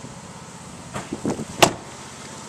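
A few soft knocks and one sharp click a little past the middle, over a steady low hum.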